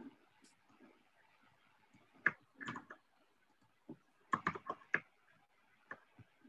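Faint scattered clicks and light knocks, with a quick run of about five together a little after four seconds in, picked up over a video call's open microphone.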